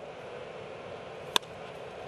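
Low, steady ballpark background noise with one sharp crack a little past halfway: a wooden bat hitting a pitch.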